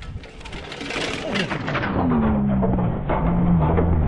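A two-seat downhill mountain-bike tricycle rattling and clattering as it runs down a steep, rocky slope, growing louder over the first second or so as it comes closer. In the second half a rider joins in with a long, drawn-out shout.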